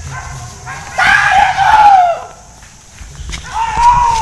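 A man's long, drawn-out shout to the hunting dogs during a wild-boar chase, rising and then falling, about a second in; a second, shorter call follows near the end.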